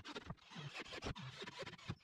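Irregular scraping and clicking of a cordless drill and hands working against a thin sheet as it is screwed down onto a wooden frame.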